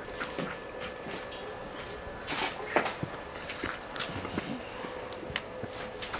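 Young brown bears play-fighting at close range: irregular scuffling with scattered scrapes, clicks and knocks, the sharpest knock a little under three seconds in.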